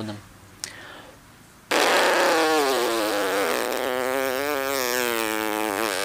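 Lips buzzing as air held in puffed-out cheeks is blown out slowly through a small opening in the centre of the lips: one long, loud buzzing tone that starts about two seconds in, its pitch sinking slightly and wavering. This is the first step of circular breathing practice for the didgeridoo, in which the sound should come out long.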